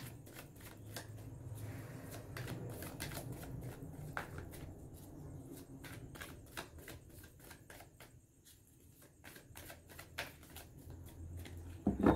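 A deck of tarot cards being shuffled overhand by hand: a run of quick, soft, irregular clicks and slaps of cards against each other, thinning out briefly a little past the middle.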